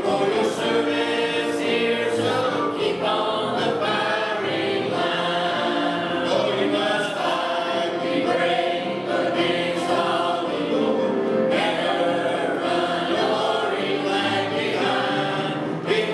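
A mixed choir of men and women singing a hymn from the hymnal.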